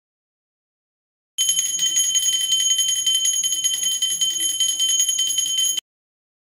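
Brass puja hand bell rung rapidly and continuously, a steady clear ringing that starts about a second and a half in and cuts off suddenly near the end.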